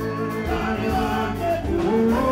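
Live band music with singing: an acoustic guitar, bass guitar and drums playing under a vocal line, with a steady low bass throughout.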